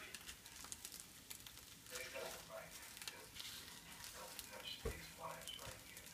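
Eggs frying faintly in a pan, a soft crackling sizzle with scattered ticks, under faint murmured voices. A single soft thump about five seconds in.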